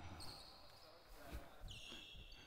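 Near silence in a gym: a couple of faint low thumps a little over a second in, like a basketball or feet on the hardwood court, over a faint steady high tone.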